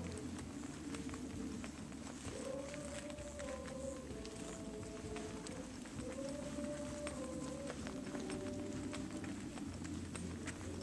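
Footsteps and handheld-camera handling noise from someone walking along a brick path and over grass, a stream of soft irregular clicks and bumps. Long, gently wavering pitched tones sound in the background several times.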